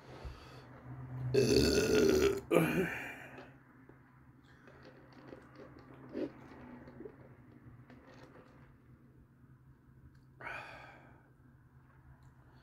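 A man's loud belch about a second and a half in, lasting about two seconds and breaking into a second, shorter burst at the end, right after drinking fountain soda.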